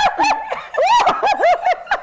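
A woman laughing hard: a rapid run of high-pitched laughs, each rising and falling, about four a second.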